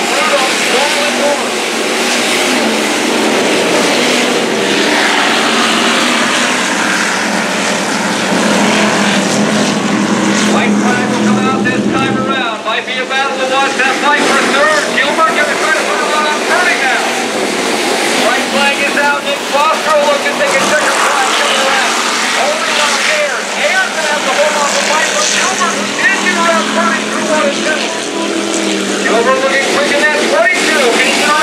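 Hobby stock race cars' engines running as the pack laps a dirt oval, heard from the grandstand with a voice over the track loudspeakers. About twelve seconds in the low engine drone cuts off abruptly and the sound changes.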